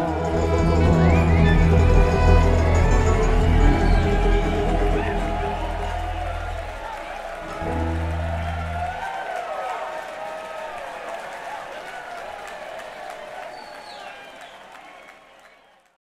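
A string band's closing notes ring out over held low bass notes that stop about seven seconds in, with one more short bass note after. The audience then cheers and applauds with whistles, and the sound fades out.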